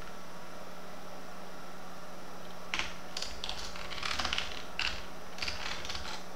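Typing on a computer keyboard: irregular keystroke clicks that begin about halfway in, after a quiet start, over a faint steady low hum.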